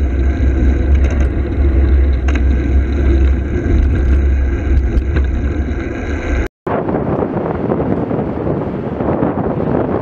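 Wind noise on the microphone of a camera on a moving bicycle, a steady rumble and rush with road noise under it. About six and a half seconds in, the sound cuts out for a moment and comes back with much less low rumble.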